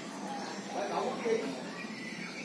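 Low, indistinct murmured speech, much quieter than the chanting around it.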